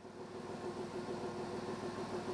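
Diesel engine of a Serbian Railways class 711 diesel multiple unit running with a steady hum as the railcar creeps slowly out of the depot shed. The sound fades in at the start, then holds steady.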